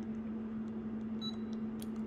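Keys being pressed on an HP 49g+ graphing calculator: a short high-pitched beep about a second in and a faint click near the end, over a steady low hum.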